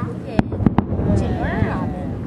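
Aerial fireworks bursting over water: three sharp bangs in the first second, the last two close together, over a continuous low rumble. A person's voice follows.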